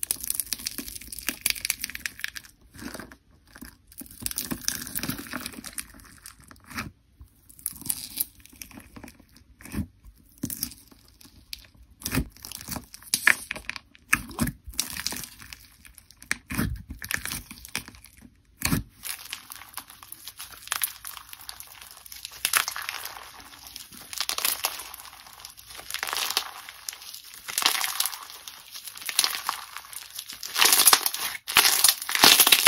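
Clear foam-bead slime (floam) being pressed and squeezed by fingers, the beads giving irregular crunchy crackling with occasional sharper pops. The crackling grows busier and steadier in the second half.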